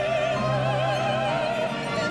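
Woman soloist singing long held notes with a wide vibrato, in an operatic classical style, accompanied by a church orchestra.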